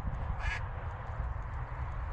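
A single short goose honk about half a second in, over a steady low rumble.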